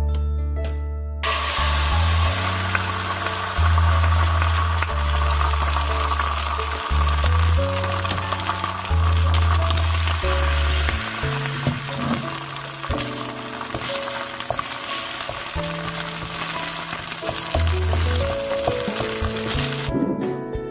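Beaten egg frying in a hot non-stick pan, sizzling steadily; the sizzle starts about a second in.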